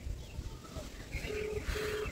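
Telephone ringback tone played through a mobile phone's speaker: a double ring of two short, steady low beeps close together near the end, meaning the call is ringing and not yet answered.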